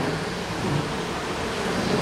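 Steady rushing background noise with no distinct event.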